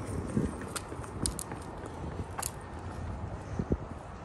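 Footsteps on pavement, irregular hard clicks of shoes striking asphalt, over a steady low outdoor rumble.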